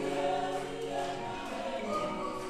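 Recorded full choir singing sustained chords in several voice parts, played back over loudspeakers in a recital hall.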